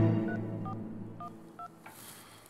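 Mobile phone keypad beeping as a number is dialled: four short dual-tone beeps about half a second apart.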